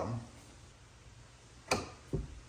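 Quiet room tone, then one sharp click near the end: a gas hood lift strut's socket end snapping onto its ball-stud mount.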